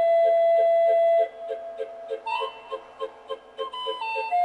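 Circus calliope music: a whistle-like melody with a long held note in the first second, over a steady oom-pah beat of about four a second.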